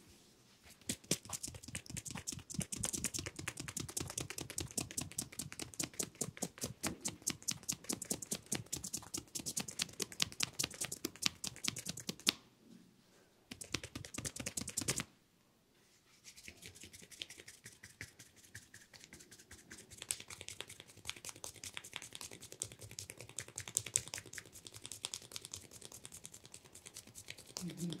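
Hands percussing the neck, shoulders and head in a tapotement massage: a fast, even patter of edge-of-hand and palm strikes on skin. The patter stops briefly about twelve seconds in and again about fifteen seconds in, then goes on more softly.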